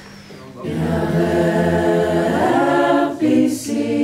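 Several voices singing together without instruments in long held chords, one line gliding upward in the middle; after a short break about three seconds in, a second held chord begins.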